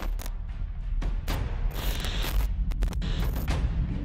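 Logo-sting sound design: a deep, continuous rumble under rapid glitchy crackles and short hissing bursts.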